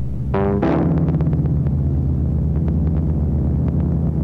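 Electronic synthesizer music: a steady low synth drone, with a bright synth chord struck about half a second in that fades away over the next second, and light scattered clicks.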